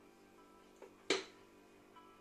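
Soft background music with steady held tones, and about a second in a single sharp knock from a wooden spoon on the cast-iron pot as the stirring ends.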